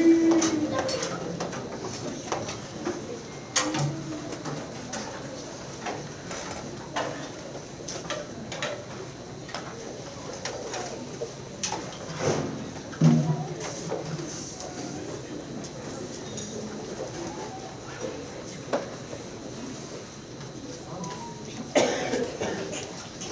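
Hall room sound in a pause with no music playing: faint audience murmur with scattered small clicks, knocks and shuffling.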